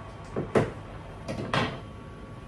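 Cookware clattering in a kitchen: a pot and its glass lid set down on the stove hob, two short clusters of sharp knocks about a second apart.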